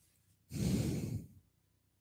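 A man's single sigh, a breath out close to a headset microphone, starting about half a second in and lasting just under a second.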